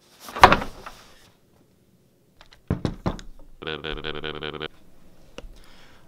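A loud thump as something is knocked or set down near the camera, then, after a silent gap, two more knocks. A steady buzzing tone follows for about a second.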